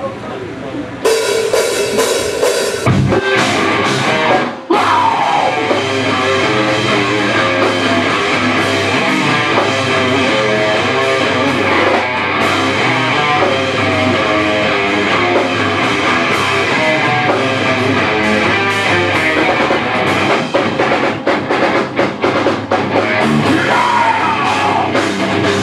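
Metal band playing live: distorted electric guitars and a drum kit come in loud about a second in, break off briefly at about four and a half seconds, then drive on without a pause.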